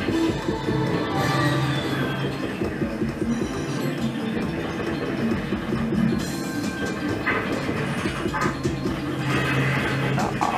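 Video slot machine playing its electronic game music and jingles as the reels spin, with a short falling sound effect a little over a second in.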